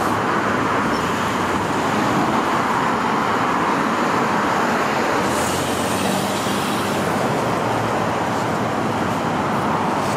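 Steady, loud rush of freeway traffic from Interstate 405: an even wash of tyre and engine noise with no single vehicle standing out.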